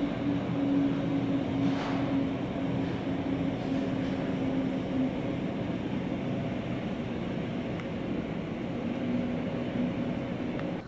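Steady low mechanical drone with a faint hum tone that wavers slightly in pitch.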